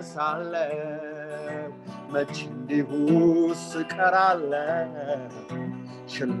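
A man sings a hymn, accompanying himself on acoustic guitar, with a wavering vibrato on the held notes.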